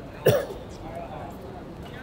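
A person coughs once, short and loud, about a quarter second in, followed by faint voices.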